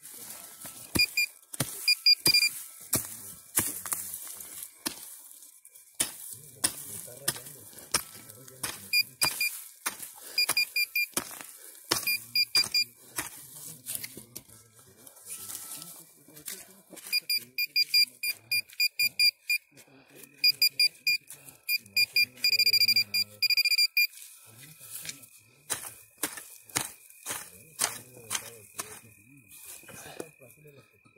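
Handheld metal-detector pinpointer beeping as it nears a buried metal target. Its high beeps come in scattered pulses, turn into fast runs past the middle, and settle into a continuous tone near the end, the sign that the probe is right on the target. Sharp clicks and scrapes of digging in the soil come between the beeps.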